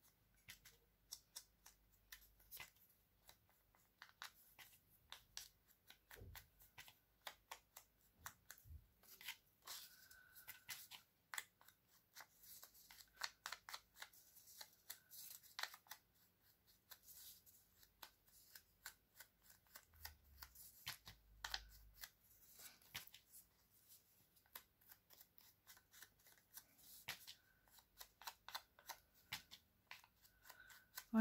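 Faint, irregular dabbing and scuffing of a foam ink applicator against the edges of a small paper heart, with light paper rustles as the heart is turned in the fingers.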